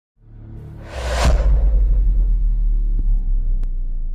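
Cinematic logo-intro sound effect: a whoosh sweep about a second in over a deep, sustained bass rumble, with two faint ticks near the end.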